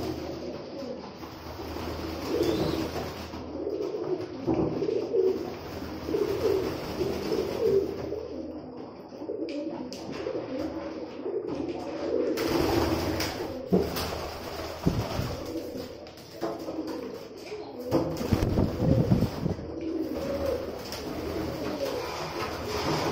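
Several domestic pigeons cooing over one another, continuously, with occasional sharp clicks and wing flaps and a burst of low flapping about three quarters of the way through.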